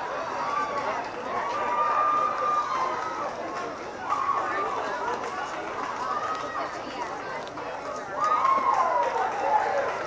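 Many young players' voices overlapping outdoors, calling out rather than talking, with some drawn-out calls and a louder falling call near the end.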